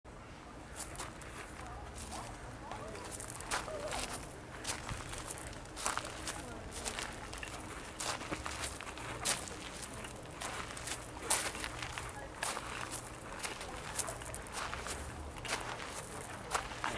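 Footsteps on a path, short scuffing steps at an uneven pace, with faint voices in the background.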